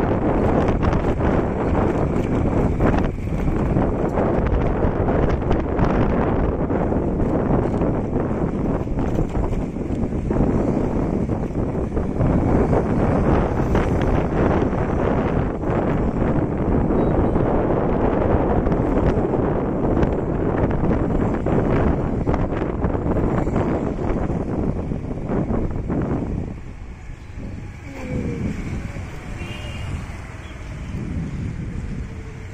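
Wind buffeting the microphone, a loud steady rumble that covers most other sound, easing a little near the end.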